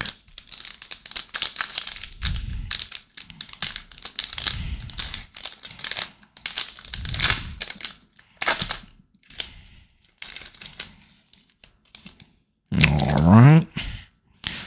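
Foil trading-card pack wrapper being crinkled and torn open, with a quick run of crackling and rustling. Near the end comes a short rising vocal sound.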